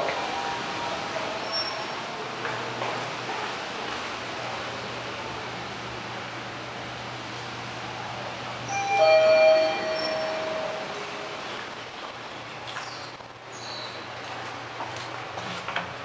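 Mitsubishi traction elevator's arrival chime sounding about nine seconds in: a higher note then a lower, longer-ringing one, announcing a car for down travel as the down hall lantern lights. A steady background hiss runs under it.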